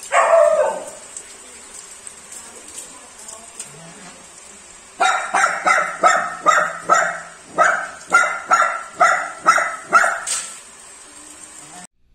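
A dog barking: one loud burst right at the start, then a steady run of about a dozen barks, a little over two a second, from about five seconds in until shortly before the end.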